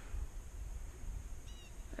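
Quiet outdoor background with a steady low rumble, and a single short, high bird chirp about one and a half seconds in.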